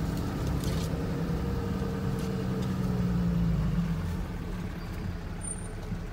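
A vehicle driving slowly along a dirt track, heard from inside the cabin: a steady low engine hum with rumble from the tyres and body, easing slightly about two-thirds of the way through.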